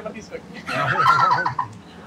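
A burst of high-pitched laughter: quick repeated 'ha' pulses lasting just under a second, starting about midway.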